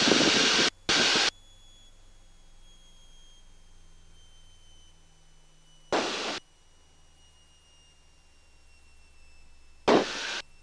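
Short bursts of loud rushing noise over the aircraft's headset intercom: two at the start and one about six seconds in. Between them there is only a low hum and a thin whine that falls slowly in pitch.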